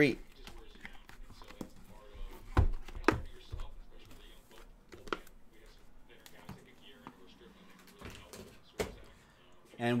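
Shrink-wrapped trading card boxes being lifted and set down on a table: a few dull thuds, the loudest two about two and a half and three seconds in, with lighter knocks and handling noise between.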